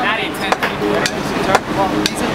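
City street traffic heard from the open top deck of a moving bus, with voices and two sharp knocks about a second apart.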